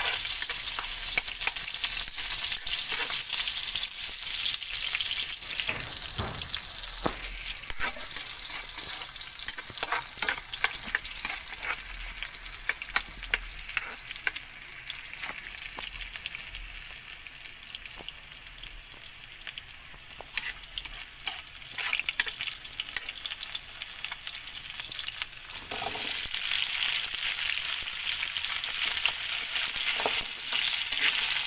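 Garlic sizzling in hot oil in a steel wok, stirred with a metal spatula that scrapes and clicks against the pan. The sizzle eases off somewhat past the middle, then grows louder again about four seconds before the end.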